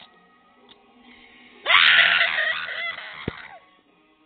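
A loud, high-pitched scream that starts suddenly a little under two seconds in and lasts about two seconds, over faint music.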